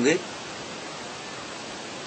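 A man's spoken word ends just as it begins, then a steady, even hiss of background recording noise fills the pause.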